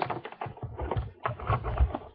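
A quick, irregular run of clicks and knocks with low thumps, as of things being handled and set down close to the microphone.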